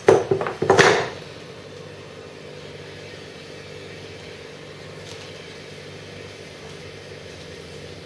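Vacuum pump for wing-mould vacuum bagging running with a steady hum after the clamped line to the bag is opened, pulling the bag down onto the layup. Two loud rushes of noise come in the first second as the line opens and the bag draws down.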